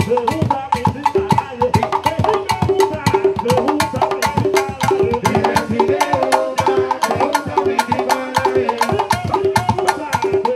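Cuban rumba guaguancó played on congas and a cajón: a steady, interlocking drum pattern of repeating pitched conga tones under a dense run of sharp, wood-like clicks.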